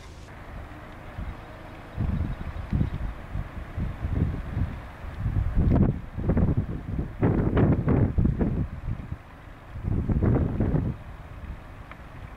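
Wind buffeting the microphone in irregular low gusts, quieter for the first two seconds and again briefly around nine to ten seconds in.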